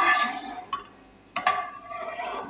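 Slotted steel spatula knocking against a metal karahi holding hot oil: two ringing clinks about a second and a half apart, with a lighter click between.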